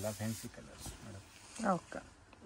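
A person's voice speaks briefly at the start and again near the end, with a soft rustle of saree fabric being unfolded in between.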